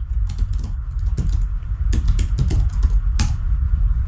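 Typing on a computer keyboard: a quick, irregular run of keystrokes with a louder key press near the end, as a short name is entered at a terminal prompt. A steady low hum runs underneath.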